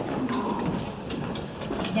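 Footsteps on a wooden floor: a string of light, irregular clicks from a person's shoes walking away across the floor.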